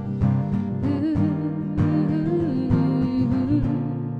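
Acoustic guitar strummed in a steady rhythm, with a woman's voice singing one long, wavering melodic line over it from about a second in.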